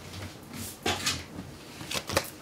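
Faint rustling and one light knock a little before a second in: a person moving about to pick a dropped tarot card up off the floor.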